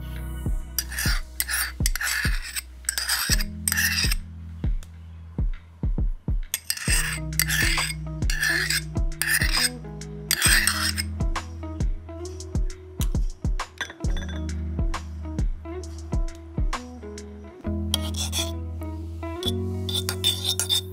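Background music with a steady beat, over runs of rasping strokes from a metal spoon scraping yogurt and mayonnaise against ceramic bowls, first near the start and again around the middle, with light spoon clinks later on.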